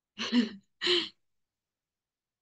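A woman laughing briefly: two short bursts of laughter about half a second apart.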